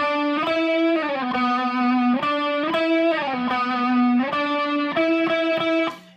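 Electric guitar through an amp with a chorus effect, playing a slow single-note phrase on C-sharp, E and F-sharp, sliding between the notes with vibrato on the C-sharp. The short phrase repeats several times.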